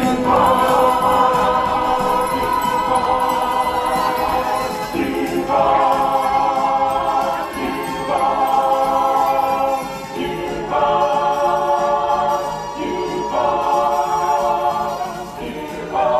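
Choir singing long held chords without words, moving to a new chord every two to three seconds.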